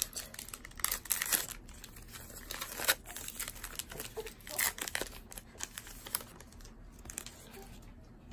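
A baseball card pack's wrapper being torn open and crinkled by hand: irregular crackles and rustles with a few sharper snaps.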